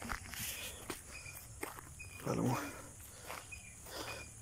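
Scuffing footsteps and handling noises on grass and dirt, with a brief voice-like call about two seconds in and faint short chirps recurring.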